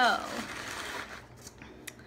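Newspaper wrapping rustling and crinkling as a stapled bundle is pulled open by hand, fading after about a second and a half, with a single sharp click near the end.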